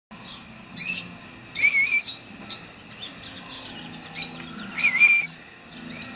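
Lovebirds calling: a series of short, shrill, wavering chirps, loudest about one and a half seconds in and again near five seconds. A faint steady low hum runs underneath.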